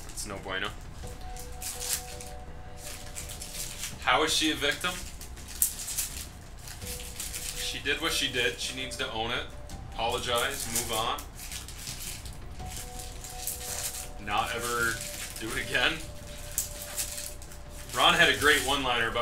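Foil trading-card pack wrappers crinkling and tearing as packs are opened by hand, with cards slid and shuffled between the fingers in a run of quick crackles.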